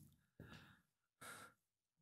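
Near silence broken by two faint breaths from a man, picked up close on his headset microphone, about half a second and a second and a quarter in.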